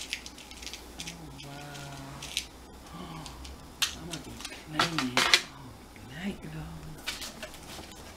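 Small objects and packaging being handled: short clicks and rustles of jewelry findings and their wrappings, the sharpest about four to five seconds in, with a faint low voice murmuring underneath.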